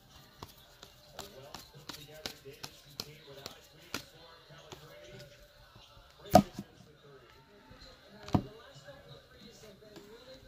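Basketball trading cards being flicked through and dealt onto piles on a table: a run of quick card clicks and snaps, then two louder knocks about six and eight seconds in.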